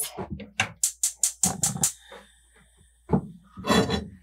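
Gas stove's spark igniter clicking rapidly, about five clicks a second for the first two seconds, as a burner is lit; a couple of louder, rougher bursts follow near the end.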